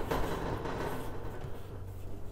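Steady low hum with faint handling noise as the coupling nut of a corrugated drain hose is twisted by hand onto a stainless steel sink's drain.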